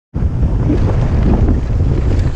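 Wind buffeting the microphone of a helmet-mounted camera while riding fast down a dirt mountain-bike trail, a loud rough rumble mixed with tyre noise on the dirt. It cuts in abruptly right at the start.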